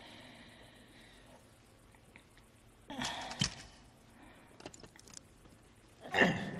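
A short breathy burst about three seconds in, ending in a sharp thud, then a few light clicks.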